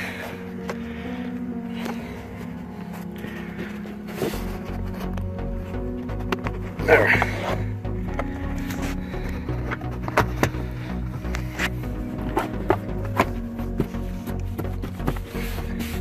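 Background music with held tones, and a steady low beat that comes in about four seconds in.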